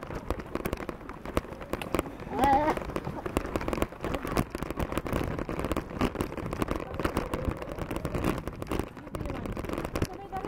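Bicycles rolling over a bumpy dirt track, with a dense, irregular crackling and rattling from the tyres and bike. A voice is heard briefly about two and a half seconds in.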